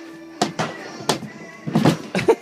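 Stunt scooter's deck and wheels knocking on a laminate floor during a tail whip: a few sharp thunks, the loudest cluster near the end as it lands, over background music.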